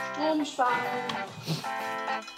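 Background music with a plucked guitar, played at a steady level.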